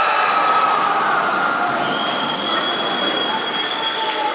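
Spectators and players cheering and shouting together as a goal is scored in a roller hockey match. About halfway through, a long, high, steady whistle-like note sounds over the cheering.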